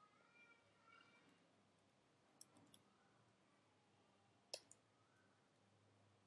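Near silence with a few faint computer keyboard clicks, the loudest about four and a half seconds in.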